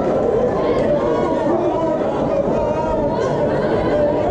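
Crowd of spectators at a cage fight, many voices talking and calling out over one another in a steady din.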